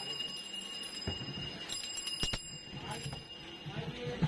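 Narrow-lane street ambience with faint voices and footsteps under a steady high-pitched electronic tone that stops shortly before the end. A few sharp clicks or knocks come about halfway through.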